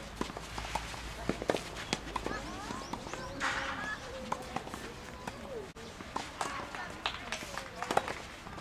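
Tennis balls being struck by rackets: a scattering of short, sharp pops and bounces, with voices calling in the background.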